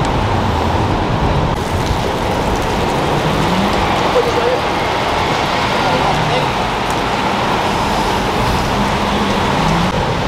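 Steady road traffic noise from the elevated highway overhead, with faint voices talking now and then.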